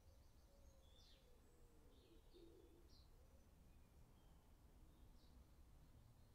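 Near silence: faint birds chirping now and then, a few short high chirps spaced about a second apart, over a low steady room hum.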